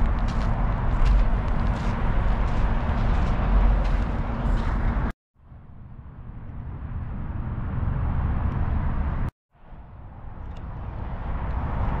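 Outdoor background noise with a strong deep rumble and an even hiss above it. It cuts out abruptly about five seconds in and again a little after nine seconds, each time fading back up.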